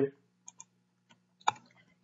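A few sparse computer keyboard keystrokes as a short word is typed, the sharpest click about one and a half seconds in.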